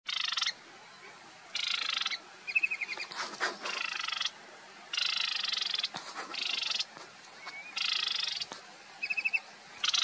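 Marsh warbler singing: a string of harsh, buzzy notes about half a second long, repeated every second or so, broken by short rapid trills.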